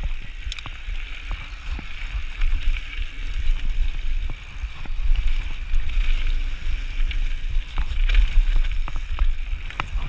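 Orange Five full-suspension mountain bike riding fast down a loose rocky gravel trail: tyres crunching over stones, chain and frame rattling with scattered sharp clicks, and wind rumbling on the chest-mounted camera's microphone.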